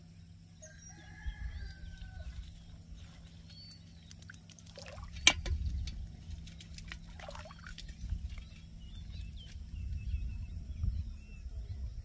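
Shallow water sloshing and splashing as hands work in a flooded paddy and a woven fish trap is handled over a metal pot, with a single sharp knock about five seconds in. Birds call in the background, including a drawn-out call early on that may be a rooster.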